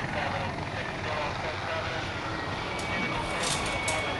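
A steady rumbling noise with faint voices in it, and a few short high hissing whooshes near the end.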